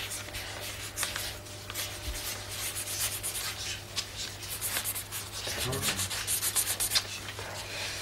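Felt-tip pen scratching across paper as words are written, in quick irregular strokes that come thicker near the end.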